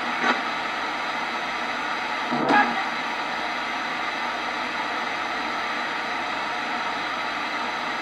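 Radio spirit box playing a steady hiss of static, with one short louder burst about two and a half seconds in.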